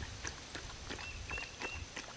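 Faint creekside background between sentences of speech: scattered soft clicks and a few short, high chirps over a low rumble.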